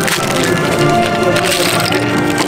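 A plastic bag of spray-paint nozzle caps torn open and crinkling, with the small plastic caps spilling and clattering onto a wooden table in many quick clicks and crackles.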